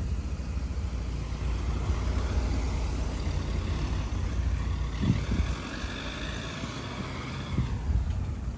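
Street traffic: a Ford Tourneo Connect van drives away ahead while an SUV approaches from the other direction, engines and tyres running with a steady low rumble.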